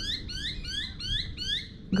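A honeyeater calling: a rapid series of short rising chirps, about four a second, over a low rumble.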